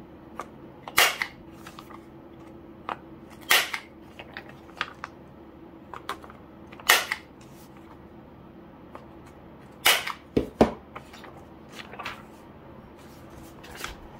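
A handheld corner rounder punch snapping through paper sheets, with four loud, sharp clacks a few seconds apart, each one rounding a corner of a diary refill sheet. Light paper handling ticks fall between them, and there are a couple of duller knocks about ten and a half seconds in.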